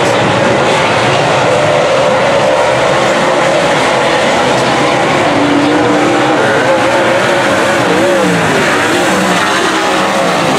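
Several dirt late model race cars' V8 engines running together at racing speed, loud and continuous, with their pitches wavering up and down as the cars sweep through the turns.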